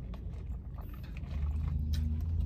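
Steady low hum of an idling car heard from inside the cabin, growing a little stronger in the second half, with a few faint small clicks.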